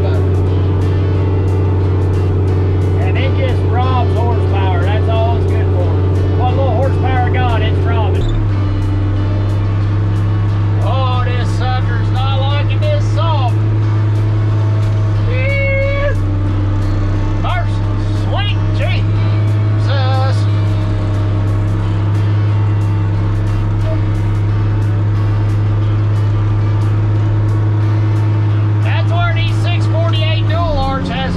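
Grapple skidder's diesel engine running steadily, heard from inside the cab; its note steps slightly higher about eight seconds in.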